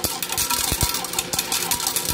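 Slot machine's coin hopper paying out: a small motor running while coins drop one after another into the tray, about five clicks a second, as the credits are cashed out.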